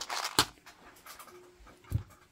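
Clear plastic packet rustling as it is handled, with a sharp click in the first half-second, then a single knock near the end as a small plastic box is set down on the table.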